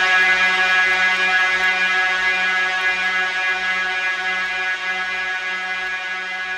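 A single held electronic synthesizer note with many overtones, with no beat behind it, slowly fading out at the close of a funk track.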